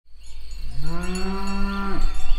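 A single low, drawn-out call that rises in pitch, holds steady for about a second and stops, over a steady low hum.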